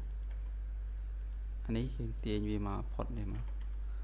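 A few computer keyboard key presses, mostly near the start, over a steady low electrical hum.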